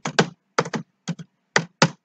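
Typing on a computer keyboard: about ten separate keystrokes in short, uneven runs, as a line of code is typed out.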